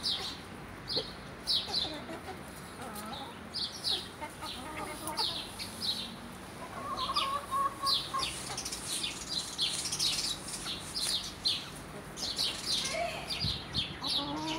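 Chickens feeding and calling: a steady run of short, high chirps with low clucks, and a brief drawn-out hen call about seven seconds in.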